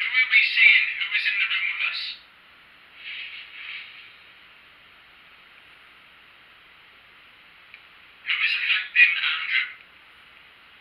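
Tinny, speech-like playback of an EVP recording through a small device speaker. It comes in three bursts: about two seconds at the start, a weaker one around three seconds in, and another near the end.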